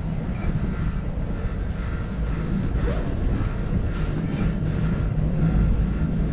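Steady low rumble and hum inside a moving aerial gondola (cable car) cabin as it travels along its cable.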